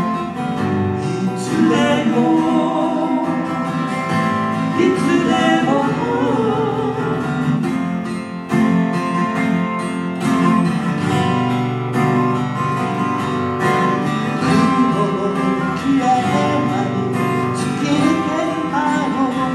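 Live folk song: two acoustic guitars strummed and picked together, with a man singing.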